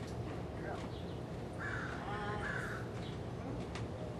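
A harsh bird call, a single caw lasting about a second, near the middle.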